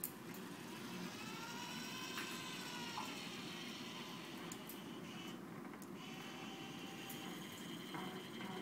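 SCORBOT-ER4u robot arm's DC servo motors whining as the arm moves, the pitch rising and then falling over the first few seconds, then holding steady in the second half, over a steady low hum.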